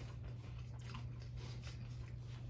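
A person chewing a mouthful of deep-fried chicken crispanada, with faint, irregular crunches of the crispy shell. A steady low hum runs underneath.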